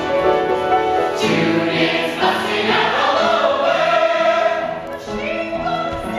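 A chorus of voices singing a show tune over instrumental accompaniment, the singing swelling in about a second in.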